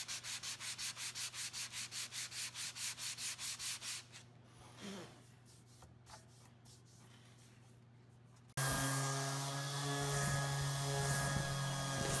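Rapid back-and-forth hand sanding of a walnut cutting board's juice groove with a soft foam sanding block, about five strokes a second, stopping about four seconds in. After a quiet pause, a Ridgid 5-inch random orbit sander starts and runs with a steady hum.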